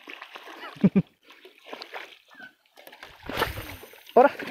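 A hooked Hampala barb thrashing and splashing at the water's surface beside a boat, with the loudest splash about three seconds in.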